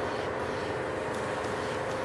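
Steady background hum of a restaurant dining room, with a faint constant tone running under it and no distinct events.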